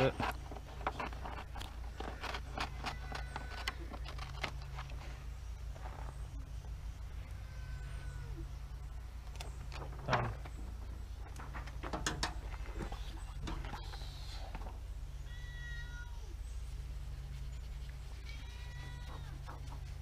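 A cat meowing, a couple of cries in the last few seconds, over a steady low hum. Scissors snipping vinyl transfer paper near the start.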